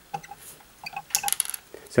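Light clicks and clinks of pliers and the small parts of a Kärcher Dirt Blaster lance nozzle being handled, with a quick cluster of them just past halfway.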